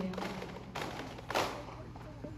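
The last note of a group chant dies away, then two short dull knocks about half a second apart, the second louder.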